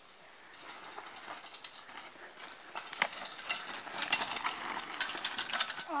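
Bicycle clicking and rattling as it rolls over a rough dirt trail, the clatter of chain and parts growing steadily louder over several seconds. A short exclamation comes at the very end.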